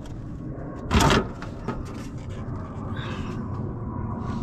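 Plastic cowl panel of a Jeep Wrangler TJ being pulled up off the base of the windshield, with one loud, brief crack about a second in as it comes free, over a steady low rumble.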